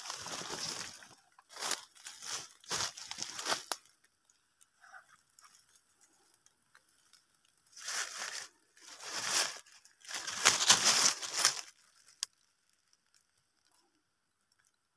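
Dry leaves and brush rustling and crunching, in two spells of a few seconds each with a quiet gap between, as someone moves through the undergrowth; a single sharp click follows the second spell.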